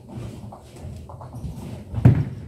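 Nine-pin bowling balls rolling down the alley lanes: a steady low rumble with a few light knocks scattered through it.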